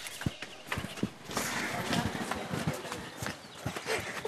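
Scuffle: irregular knocks, thuds and scuffing footsteps as people grapple, with brief voices among them.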